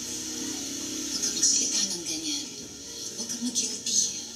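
Audio from a television drama playing on a small TV: a voice speaking over a soft music score.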